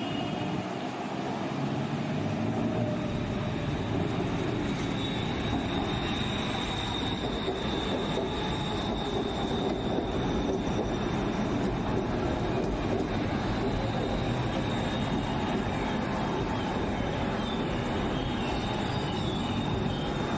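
Elevated metro train running past close by on its viaduct: a steady rumble of wheels on rail, with a high, thin, steady tone that comes in about five seconds in and fades about ten seconds later.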